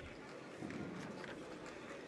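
Low arena ambience from a hall crowd, with faint light thuds of judoka's bare feet on the tatami mat.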